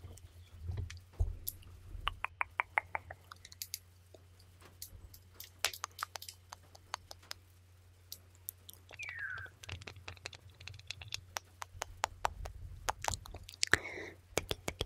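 ASMR mouth sounds close up on a microphone: rapid, irregular wet tongue and mouth clicks ('tuc tuc'), some in quick runs, over a low steady hum. About nine seconds in there is a short falling tone.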